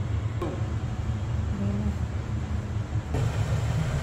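Steady low rumbling background noise, with a few faint short tones over it.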